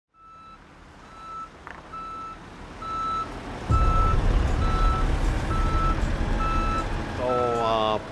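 A forklift's backup alarm beeping steadily, just under once a second, over the forklift's engine running, which gets much louder about halfway through as the forklift moves off.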